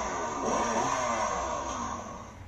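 A children's electric ride-on toy motorcycle playing its engine start-up sound effect through its built-in speaker, switched on with the ignition key: a recorded motorcycle engine revving up and down, fading out near the end.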